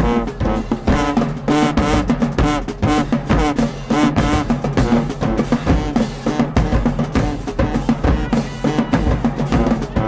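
High school marching band playing in the stands: trumpets, trombones and sousaphones on a repeated brass riff over steady bass drum and snare drumming.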